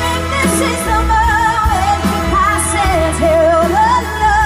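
A woman singing a ballad live with band accompaniment, holding long notes with a wide vibrato.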